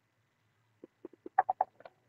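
Near silence, then a man's voice in a quick run of short, quiet stammered syllables, starting about a second in.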